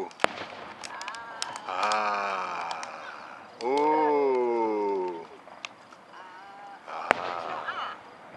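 Fireworks shells going off in sharp bangs and cracks: one just after the start, several around a second and a half in, and a strong one near the end. Between them, spectators nearby let out two long, falling-pitched vocal exclamations.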